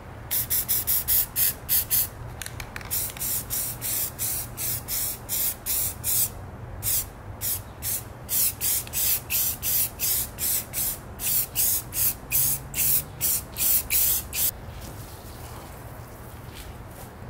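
Aerosol can of Rust-Oleum camouflage spray paint sprayed in many short hissing bursts, a few a second, with a brief pause about six seconds in; the bursts stop shortly before the end.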